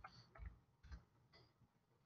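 Near silence with a few faint clicks in the first second and a half, from computer keys and mouse buttons as a web search is entered.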